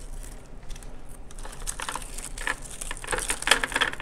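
Plastic clicks, rattles and crinkling from a Scotch tape glider (adhesive tape gun) being handled with its cover open while the tape on its reels is fixed. The clicking is sparse at first and grows busier in the second half.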